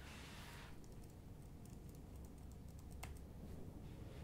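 Quiet room tone with a short soft hiss at the start, then scattered faint clicks and one sharper click about three seconds in.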